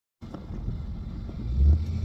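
A vehicle running, heard from inside its cabin: a low, steady rumble that grows louder near the end.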